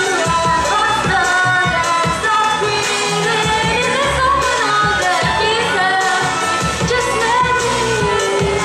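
A girl singing a melody into a microphone, accompanied by a violin, with a low pulsing beat underneath.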